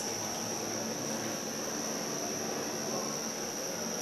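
Steady background hiss with a constant high-pitched whine running through it: the room's background noise, with no speech.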